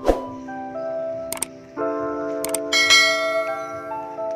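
Background music of held, chime-like keyboard notes changing pitch in steps. A sharp click comes at the start, two short high clicks come in the middle, and a bright bell-like chime rings about three quarters through.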